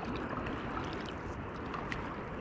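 Water washing and lapping around an inflatable kayak as it is paddled across a lightly rippled sea. The wash is steady, with a faint tick near the end.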